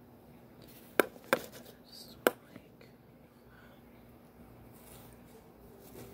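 Sharp plastic clicks from a Conair hair styling tool being handled: three clicks within the first two and a half seconds, with a few lighter ticks between.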